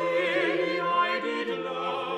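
A small vocal ensemble singing an English Renaissance madrigal, several voice parts moving against each other with light vibrato.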